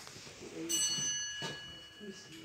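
A small bell or metal chime struck once, ringing on with a clear high tone that slowly fades, with a short knock partway through.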